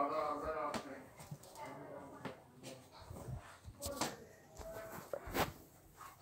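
A short voice-like sound in the first second, then faint scattered knocks and rustling from a hand-held phone being moved about, with a sharper knock about five and a half seconds in.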